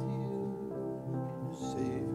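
Live worship music: acoustic guitars strumming under voices singing a slow song with held notes.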